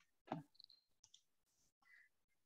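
Near silence, broken by one brief click about a third of a second in.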